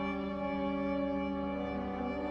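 Drone music: a bowed viola holding long, steady notes layered over sustained electronic tones, with no breaks.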